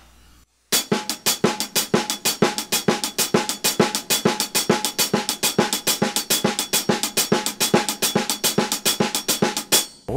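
Snare drum played with sticks in a steady, evenly spaced triplet pattern with R-L-R sticking repeated over and over, about six strokes a second, as a timing exercise for the shuffle rhythm. The strokes start just under a second in.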